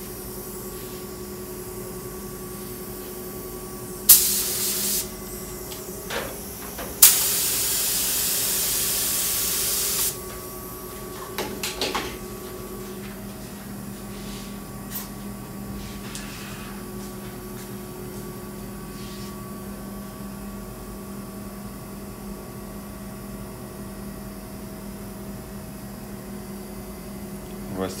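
Gravity-cup air spray gun spraying activator onto water-transfer printing film floating on the water: a hiss of about a second, then a longer hiss of about three seconds, each starting abruptly. The activator dissolves the film's ink so it can be transferred.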